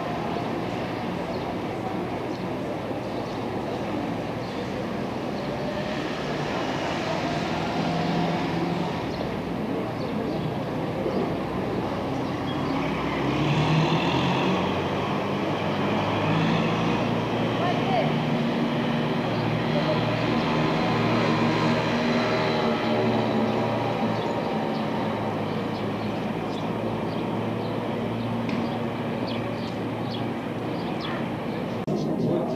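Street ambience with motor vehicle engines running and passing, growing louder and shifting in pitch in the middle, over indistinct voices.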